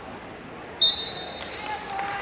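A wrestling referee's whistle: one short, loud, steady blast a little under a second in, signalling the end of the bout. Crowd voices murmur around it.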